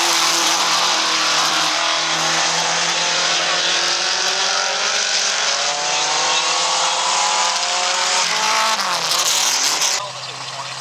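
Several dirt-track stock cars racing on the oval, their engines running hard, with the engine notes rising and falling as the cars go through the turn and pass.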